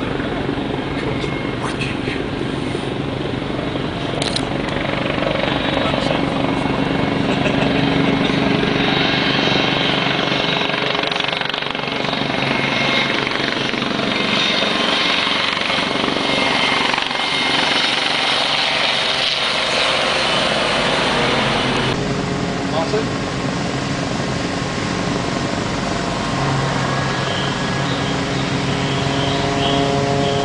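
Westland Lynx helicopter flying close by: a loud, steady rotor and turbine sound with a constant low hum. The sound changes abruptly about two-thirds of the way through, at a cut to another shot of the helicopter.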